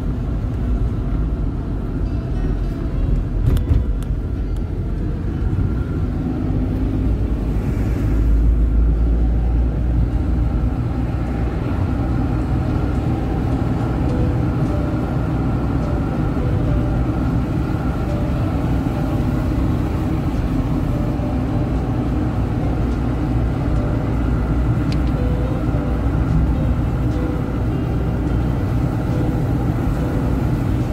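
Steady road and engine noise of a moving car heard from inside its cabin, a low rumble that swells for a couple of seconds about eight seconds in.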